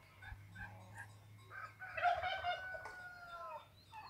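A rooster crowing faintly: one long drawn-out call starting about two seconds in that drops in pitch at its end, with a few short calls before it.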